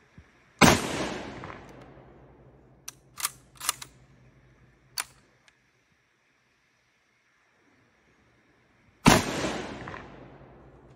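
A Mosin-Nagant 91/30 bolt-action rifle in 7.62×54R is fired twice, about eight seconds apart, each report dying away over a second or so. Between the shots come a few quick metallic clacks of the bolt being worked to eject the spent case and chamber the next round.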